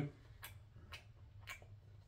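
Faint, light clicks about twice a second over a low steady room hum.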